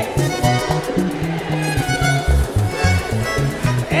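Live vallenato band playing an instrumental passage without singing: accordion lead over a steady bass line and hand drums.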